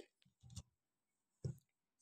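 Near silence with two faint short clicks, one about half a second in and another about a second and a half in.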